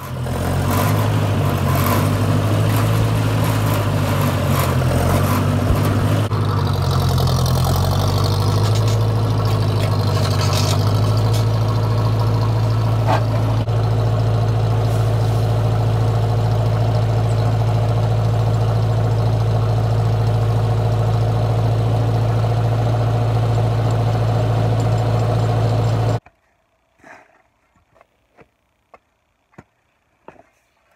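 Massey Ferguson 50 tractor engine running close by while working its three-point-hitch loader, its speed shifting over the first several seconds, then holding steady. It cuts off abruptly near the end, leaving a few faint knocks.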